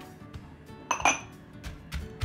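A ceramic bowl clinks sharply against a clay mortar about a second in as shallots are tipped into it, followed near the end by dull thumps of a wooden pestle starting to pound the curry paste. Soft background music runs underneath.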